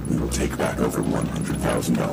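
An electronically disguised voice speaking, from the masked figure's video message.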